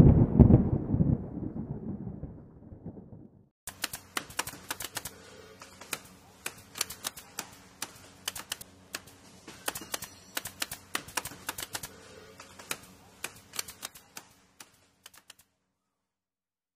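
Typewriter keystroke sound effect: a long run of irregular sharp clicks as on-screen text is typed out letter by letter, stopping shortly before the end. It is preceded by a loud, deep logo impact sound that fades away over the first three seconds or so.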